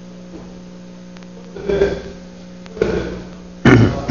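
Steady electrical mains hum from the chamber's microphone and sound system. Two brief muffled sounds come about halfway through, and a louder onset comes just before the end.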